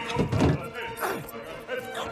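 A few heavy thuds in the first half-second, with short wordless vocal cries during a scuffle, over background music.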